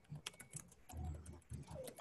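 Faint computer keyboard typing: an irregular scatter of key clicks.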